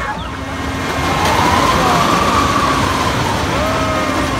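A vertical-loop fairground ride running with its train of riders going round the ring: a rush of noise that swells about a second in, with a long whine that rises and then falls.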